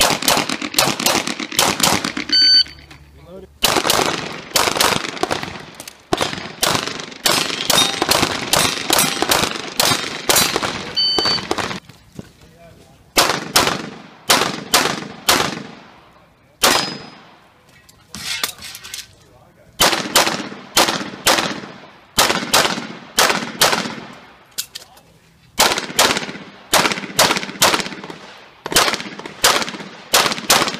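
Rapid semi-automatic handgun fire in strings of quick shots, with short pauses between strings. An electronic shot timer beeps a couple of times to start new strings.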